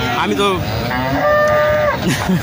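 A cow mooing: one long, steady call that starts about a second in.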